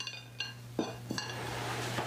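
Kitchenware being handled: three short, ringing clinks, one near the start, one about half a second in and one just past a second, over a steady low hum.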